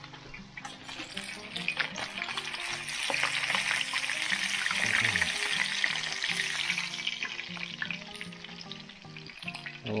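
Pieces of fish frying in hot oil in a cast-iron skillet: a steady sizzle that swells in the middle and dies down near the end, with light clicks and scrapes of a fork turning the pieces in the pan.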